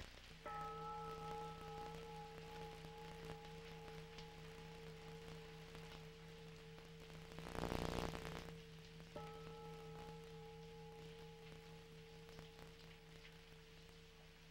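Faint ringing of a struck bell, sounded twice, once just after the start and again about nine seconds in, each time with bright upper tones that fade while a low steady hum rings on. A brief rushing swell rises and dies away about eight seconds in.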